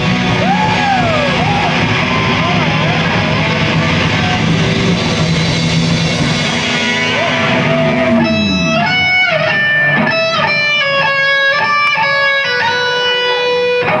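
Live punk rock band playing loud with distorted electric guitars and drums. About seven seconds in, the band drops out with a downward guitar slide, leaving an electric guitar alone playing clear, held single notes that change every half second or so.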